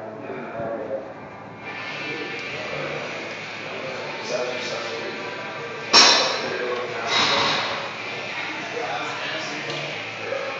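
Loaded barbell clanking into the steel squat rack: one sharp metal clank with a short ring about six seconds in, the loudest sound here, over gym background noise.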